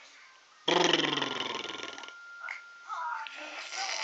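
A loud, low, guttural growl-like vocal sound lasting about a second and a half, followed by softer, higher babbling sounds. A faint steady high tone runs underneath.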